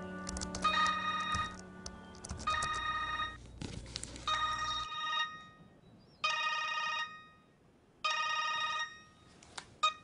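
Mobile phone ringtone ringing five times, about two seconds apart, each ring a short burst of electronic tones. The ringing stops near the end with a click as the call is answered.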